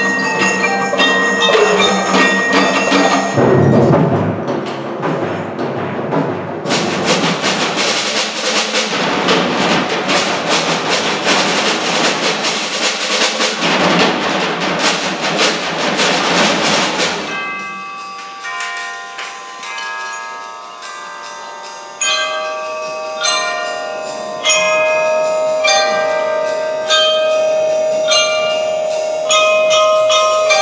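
Percussion ensemble playing mallet instruments (marimba, xylophone and bell-like keyboards) in concert. A dense stretch of rapid strokes and noise fills the middle, then gives way to ringing, sustained bell-like notes.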